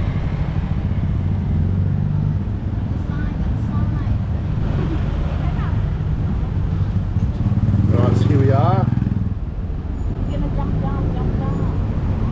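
Steady engine and road rumble from riding in the open back of a songthaew (baht bus) in city traffic. About eight seconds in it grows louder for a second or so, with faint voices over it.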